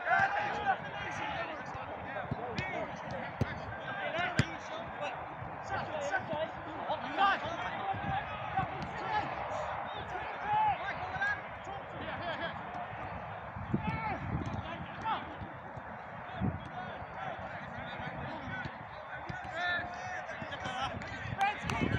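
Indistinct shouts and calls of footballers overlapping across several pitches, with occasional short thuds of a football being kicked.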